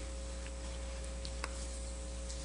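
Steady electrical mains hum with a few faint ticks, the clearest about one and a half seconds in.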